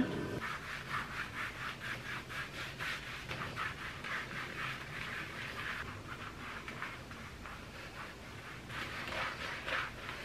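A self-tan applicator mitt rubbing over bare skin to spread tanning mousse: soft, rhythmic scratchy strokes, about three a second, that fade after about six seconds and pick up faintly again near the end.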